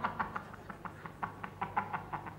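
Scattered hand claps, irregular, about seven a second, thinning out.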